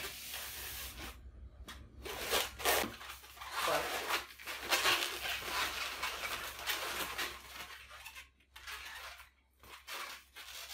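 Hands rubbing and bending a long inflated latex twisting balloon as it is folded in half, giving a series of irregular rubbing strokes that grow sparser near the end.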